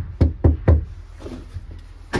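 Knuckles knocking three times on a panelled wooden-style front door, three quick knocks about a quarter second apart.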